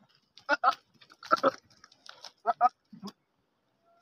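Goat giving a run of short, loud calls, several coming in quick pairs, as the male courts and mounts the female.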